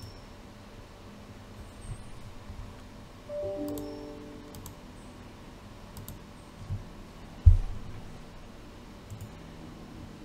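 Quiet room with a few computer mouse clicks, a brief chime-like group of tones about three and a half seconds in, and a single low thump, the loudest sound, about seven and a half seconds in.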